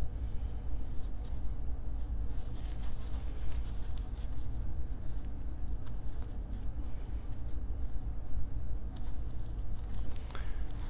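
A steady low rumble runs throughout, with faint rustles and light ticks of gloved hands handling and wiping a small metal hotend heater block with a paper towel.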